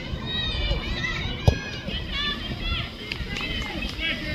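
High-pitched shouts and calls from players and spectators on a soccer field, overlapping throughout. A single sharp thump about a second and a half in, a ball being kicked.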